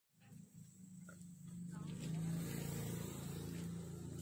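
An engine running steadily with a low hum, growing louder over the first two seconds and then holding, with a couple of faint clicks early on.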